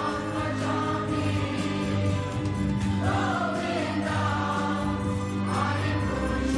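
Kirtan: a group of voices singing a devotional chant over a steady sustained drone, with small hand cymbals keeping time.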